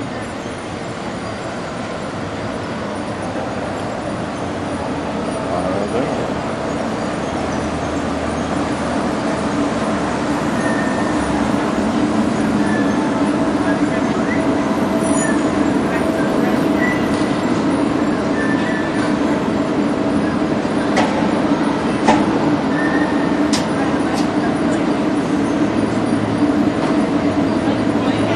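Walt Disney World electric monorail train pulling into an indoor station: a steady hum and rumble that grows gradually louder, with a few faint clicks and snatches of background voices.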